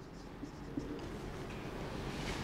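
Marker pen writing a word on a whiteboard: faint, irregular scratching of the pen strokes, with a couple of small taps of the tip.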